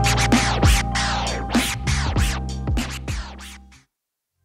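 Baby scratches: a sample scratched back and forth with a Serato control vinyl on a turntable, each stroke a fast sweep in pitch, about three strokes a second, over a steady bass-heavy backing. The sound fades out shortly before the end.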